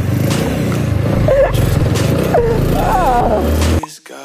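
A motorcycle engine running with a steady low rumble under a background track with a singing voice; it all cuts off suddenly shortly before the end.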